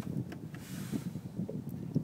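A single button click as the radio's voice-command button is pressed, followed by a low, steady rumble of cabin background noise.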